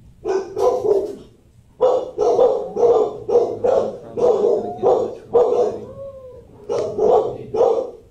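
A dog barking repeatedly in a shelter kennel block, about three barks a second, with a short break after the first second and another near the six-second mark.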